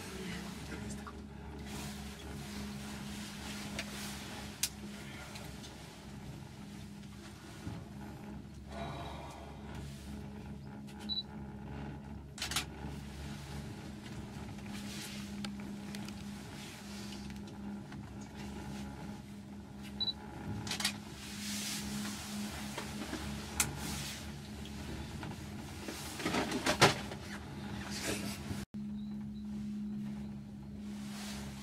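Gondola cable car cabin running along its cable, heard from inside: a steady low hum and rumble with scattered clicks and knocks, thicker in the last third.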